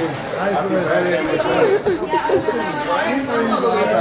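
A group of people chattering, several voices talking over one another at once.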